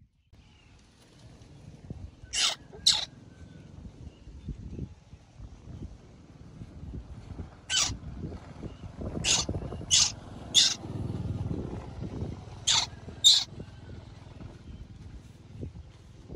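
A baby monkey screeching in short, high-pitched cries, about eight in all and mostly in quick pairs, as a T-shirt is pulled onto it for the first time. A low rustle of cloth and handling runs underneath.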